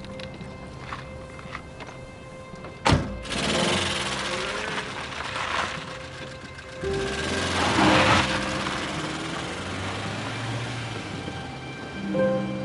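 Soundtrack music over a car door slamming shut about three seconds in, followed by a car pulling away and driving off.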